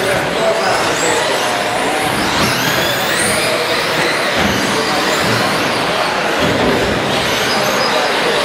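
Several 1/10-scale electric short-course RC trucks racing together, their motors whining up and down in pitch as they speed up and slow down.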